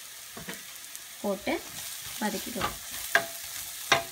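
A spoon stirring and scraping thick onion-tomato masala frying in a stainless steel pan, with a steady sizzle under it. Two sharp taps of the spoon on the pan come near the end.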